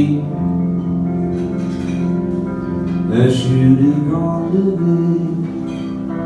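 Live music from guitar and electric keyboard: a song's passage between sung lines, with held keyboard chords under the guitar.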